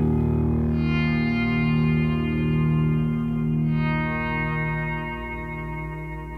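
Rock band's outro: distorted electric guitar chords ringing out through effects and echo, with a new chord struck about a second in and another near four seconds in, the sound slowly fading.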